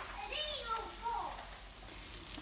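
Salmon cakes sizzling gently in oil in a nonstick skillet over low-to-medium heat, a quiet steady hiss. A faint voice is heard in the background during the first second.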